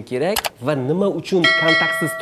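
A man talking in conversation. About one and a half seconds in, a ringing, bell-like chime comes in under the voice and keeps sounding.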